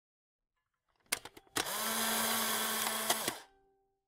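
Edited-in intro sound effect: a few quick clicks about a second in, then a steady mechanical whir with a low hum for nearly two seconds, a last click, and a sudden stop.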